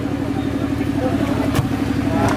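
A motor running steadily nearby: a constant hum with a fast low pulse. Crowd chatter sits underneath, and there is a single sharp click about a second and a half in.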